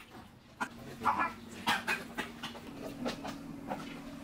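A man panting and gasping open-mouthed in short, rough breaths, about two a second, with a steady low hum behind.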